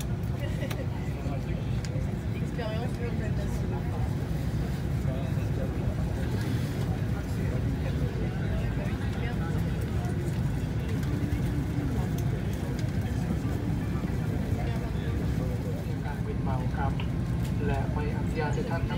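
Steady low rumble inside an airliner cabin, with passengers' voices talking in the background.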